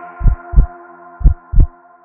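Heartbeat-like sound effect in a logo sting: two pairs of low double thumps, lub-dub, about a second apart, over a fading held ambient music chord.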